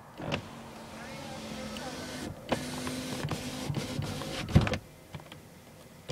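Steady low motor hum heard from inside a car, with a few light knocks scattered through it. The hum drops away near the end.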